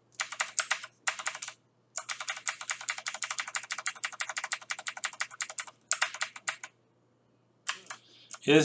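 Typing on a computer keyboard: quick keystrokes in several bursts, the longest a steady run of about four seconds, then a pause of about a second near the end.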